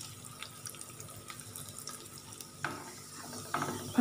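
Cashew nuts and raisins frying in hot fat in a nonstick pan: a soft, steady sizzle full of tiny crackles, with a couple of brief louder bursts near the end as they are stirred with a silicone spatula.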